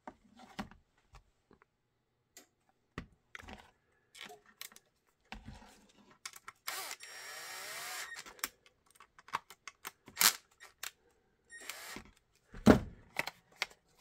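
Cordless impact driver running a screw into a plastic holster mount in a burst of about a second, with a second short burst later. Around it, clicks and knocks of the Kydex holster and its hardware being handled, with one sharp knock near the end.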